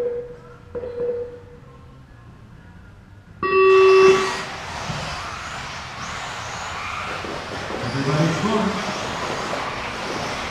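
A couple of short beeps, then a loud race-start tone sounding for just under a second about three and a half seconds in. A steady rush of electric 4WD RC buggies running on the carpet track follows it.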